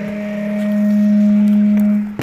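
A man's voice over a loudspeaker holding one long, very steady note, the drawn-out call of a kabaddi commentator during a raid.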